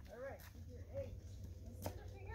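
Quiet, indistinct talking in a low voice, in two short snatches, over a steady low rumble, with one sharp click just before the end.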